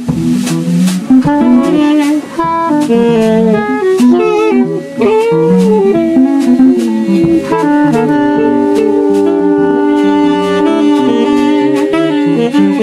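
Live free-improvised jazz: several saxophones play moving, overlapping lines that settle, about seven and a half seconds in, into long held notes, over a red archtop electric guitar and a drum kit.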